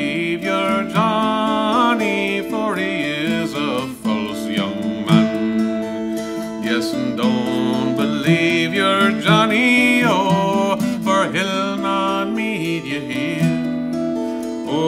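A man singing an Irish ballad with his own acoustic guitar accompaniment, the guitar picking steady notes under a voice that slides and wavers in pitch.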